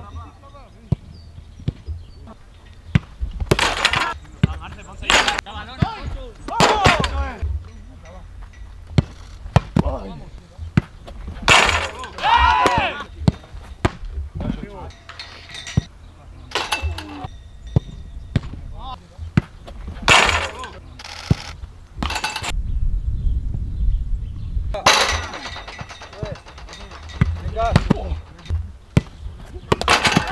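Footballs being kicked in training drills: repeated sharp thuds of boots striking the ball at irregular intervals, with players' short shouts between them.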